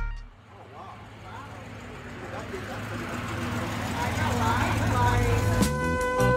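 Street ambience fading in and slowly growing louder: a car running, with traffic noise and muffled voices. Music begins near the end.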